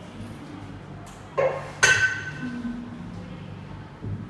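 Sound effect from a random number generator on a classroom interactive whiteboard as it draws a new number: a short clunk, then about half a second later a bright ringing ding that fades out.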